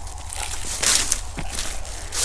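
Footsteps crunching on dry, harvested corn stubble: a few irregular crunches, the loudest about a second in, over a steady low rumble.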